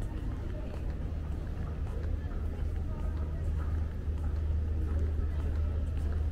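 Room noise of a large airport terminal hall: a steady low rumble with indistinct distant voices and a few faint clicks.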